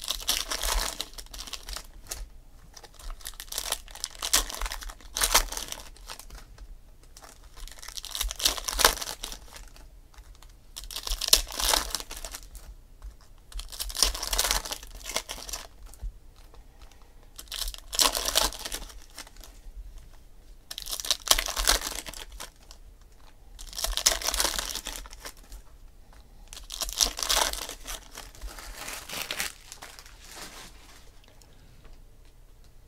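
Trading-card pack wrappers crinkling and tearing as packs are ripped open and handled, in repeated rustling bursts about every three seconds.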